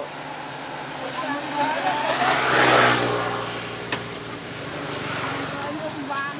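A motor vehicle passing by, its engine and road noise swelling to a peak about halfway through and then fading away.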